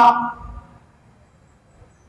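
A man's preaching voice trailing off at the end of a phrase in the first half-second, followed by a pause of faint room tone.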